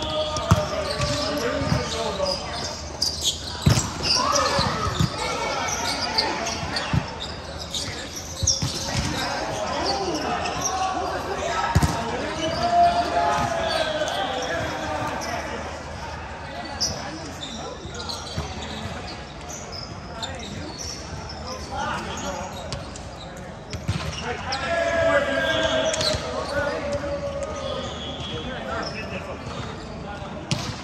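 Volleyball rally in a large echoing gym: the sharp slap of hands and arms striking the volleyball, several hits spread through the rally, under players' voices calling out.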